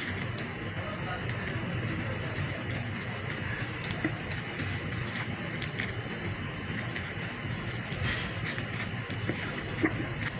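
Steady mechanical hum of kitchen refrigeration or ventilation, with scattered small clicks of a knife working meat on a cutting board.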